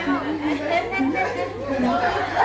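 Several people talking over one another: a chatter of children's and adults' voices.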